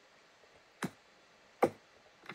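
Two sharp computer-mouse clicks, about a second apart, the second louder.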